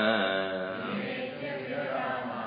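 A man chanting a Sanskrit verse, the last syllable of the line drawn out and fading away after about half a second.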